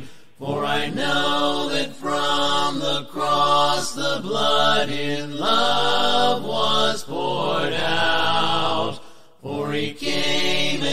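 A cappella hymn: voices singing together in harmony without instruments, in phrases broken by short pauses, with a longer breath just before the end.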